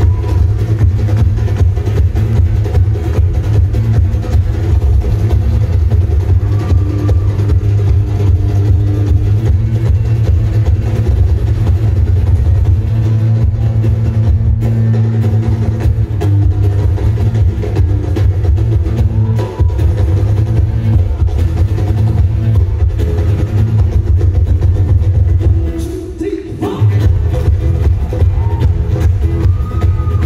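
Loud amplified live band music through a PA, heavy in the bass, with hand drumming on a djembe-style drum. The music breaks off for about a second near the end, then comes back in.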